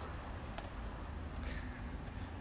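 Quiet background noise: a low steady rumble, with a faint click about half a second in.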